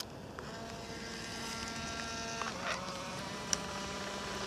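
Fujifilm instax mini 90 instant camera's motor whirring as it drives the exposed print out, starting just after a shutter click. Its pitch steps a little lower about halfway through, with a short click near the end.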